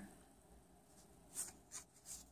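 Near silence, broken about a second and a half in by two brief soft rustles of paper flashcards being handled.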